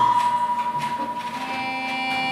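Accordion holding sustained reed tones: a high note starts suddenly, and more notes, lower and higher, join it about one and a half seconds in to form a steady chord.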